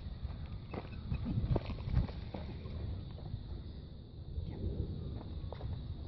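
Footsteps on grass with scattered short thumps, the loudest about two seconds in, over a steady low rumble.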